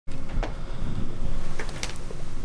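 Handling noise from a hand-held camera: an uneven low rumble with a few short clicks and knocks.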